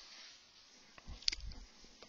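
Quiet room with two faint clicks a little past the middle, the second one sharper.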